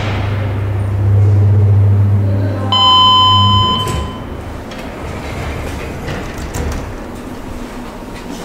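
KONE elevator arriving at the landing: a low steady machinery hum as the car comes in, ending abruptly as it stops. A single electronic arrival chime rings for about a second near that stop, and quieter door mechanism noise follows as the doors open.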